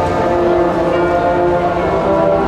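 Marching band brass holding a loud sustained chord over the front-ensemble percussion, with a few higher notes entering about a second in.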